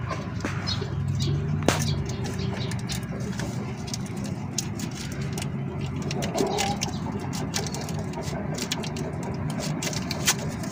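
Small clicks and taps of hands handling the oil filter mount and its seal on a car engine, with one sharper click about two seconds in, over a steady low background hum.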